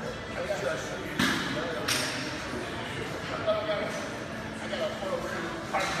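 Gym room sound: indistinct background voices, broken by three sharp metallic clanks of weights, the first two about a second apart early on and the third near the end.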